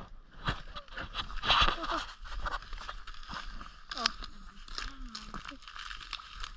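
Dry reeds and brush crackling and crunching in scattered clicks as someone pushes through them at a pond's edge. About four seconds in comes a short falling voice sound, and a brief murmur follows about a second later.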